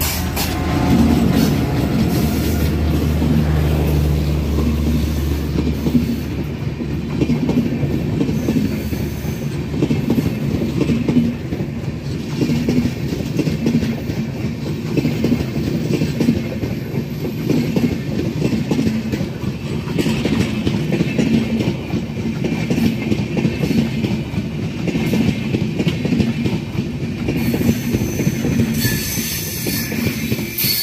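Diesel-hauled passenger train passing close by. The locomotive's engine drones low for the first few seconds, then the coaches roll past with a loud, steady rumble and a regular clickety-clack of wheels over the rail joints.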